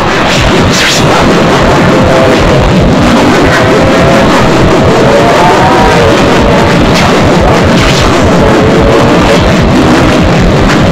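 A loud, steady cacophony of many distorted logo-remix soundtracks played over one another at once, with music and warbling, pitch-bent tones blending into a dense jumble.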